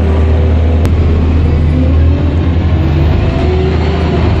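Bus engine running, heard from inside the passenger cabin as a steady low drone, with a whine that rises in pitch as the bus picks up speed in the second half. A single sharp click about a second in.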